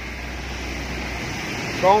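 Steady low mechanical hum and hiss of an electric piston air compressor running quietly, the low hum easing a little about a second in.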